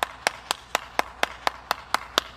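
One person clapping alone, evenly spaced claps about four a second.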